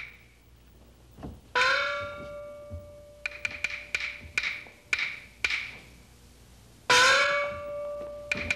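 Chinese opera percussion: quick groups of sharp wooden clicks, and twice a small opera gong struck and left ringing, its tone sliding up slightly in pitch just after each strike.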